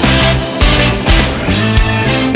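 Funk-soul band playing an instrumental passage, electric guitars over bass and a steady drum beat.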